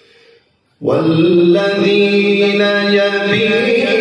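A man recites the Quran in the melodic tajweed style. After a brief faint moment he begins a long phrase about a second in, holding drawn-out notes with slow ornamented turns.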